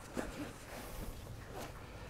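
Faint rustling and a few light ticks of a car seat belt's webbing being handled and pulled through the belt guide of a child car seat.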